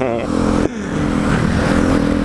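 Motorcycle engine running at highway cruising speed under a steady rush of wind and wet-road noise.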